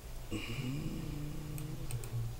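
A person's drawn-out wordless vocal sound, a hesitant hum gliding slightly in pitch for about a second and a half, over a steady low hum. Two sharp computer mouse clicks come near the end.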